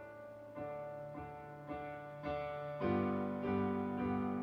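Digital piano playing a hymn tune without singing: full chords struck about every half second and let ring, swelling louder a little before the end.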